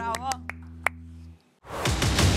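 A live band's final chord ringing out, with a few short voices and two or three sharp claps over it. The sound cuts off abruptly about one and a half seconds in, and a loud, noisy rush of the channel's logo ident begins just after.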